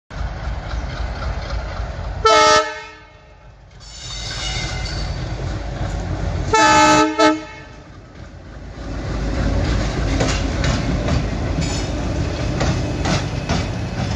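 ALCO WDM3D diesel locomotive sounding its horn twice, a short blast and then a longer one a few seconds later, over the steady rumble of its diesel engine. In the second half the engine grows louder as it draws near, with wheels clicking over the rail joints.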